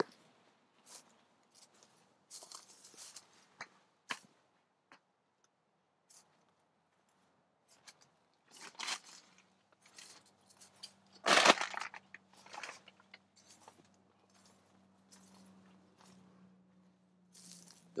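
Scattered rustles and crunches of footsteps and brushing through dry straw mulch and greenhouse debris, the loudest crunch about eleven seconds in. A faint low steady hum runs under the second half.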